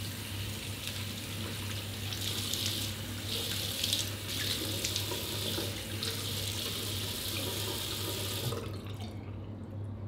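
Bathroom washbasin tap running, with water splashing in the basin as hands scoop it to wash the face. The tap shuts off abruptly about eight and a half seconds in. A steady low hum lies underneath.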